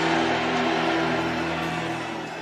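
Background music: one sustained chord of several steady notes held without change, easing off slightly toward the end, over a steady noisy background.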